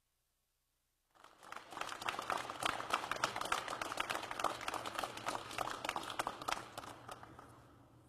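Crowd applauding, many hands clapping, starting about a second in and gradually fading near the end.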